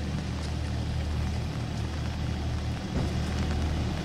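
Steady low engine hum at a constant pitch, with rain falling over it.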